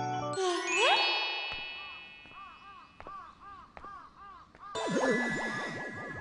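Anime sound effects: a bright chime sting rings out just after the music cuts off and fades over a couple of seconds. It is followed by a faint run of short rising-and-falling tones, about three a second, then a louder burst near the end.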